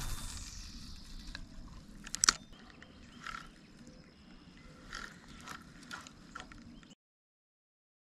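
Spinning reel being cranked and handled: scattered short mechanical clicks over a low steady hiss, cutting off suddenly about seven seconds in.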